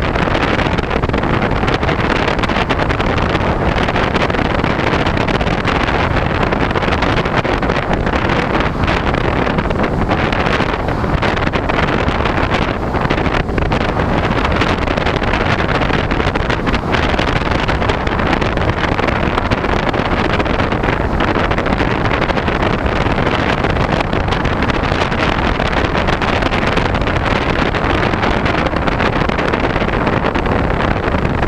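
Steady rush of wind over the onboard camera's microphone on a Talon FPV model plane in flight, loud and unbroken.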